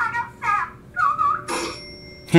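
Telephone ringing with a high, warbling electronic tone in a cartoon soundtrack, in short bursts about a second apart.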